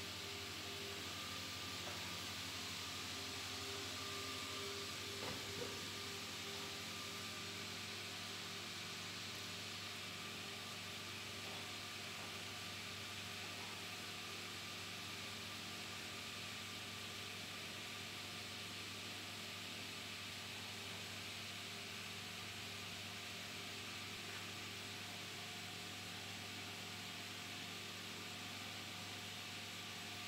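Steady hum of an electric motor running, with an even hiss over it and one light knock about five seconds in.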